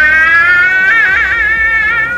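A woman's long, high-pitched shriek, held on one note without a break, with a brief warble about a second in.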